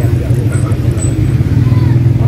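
A loud, steady low rumble with faint voices above it.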